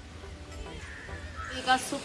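Faint background music, then a woman's voice starts speaking about one and a half seconds in, with a drawn-out, gliding tone.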